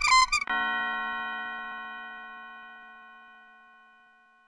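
Logo jingle: a quick run of bright, chime-like notes lands about half a second in on a held chord, which slowly fades away.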